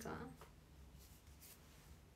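Near silence: room tone with faint hiss, after the last syllable of a woman's speech trails off, and a faint brief rustle about a second and a half in.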